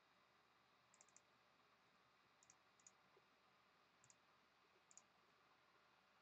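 Near silence with a few faint computer mouse clicks scattered through it, some in quick pairs.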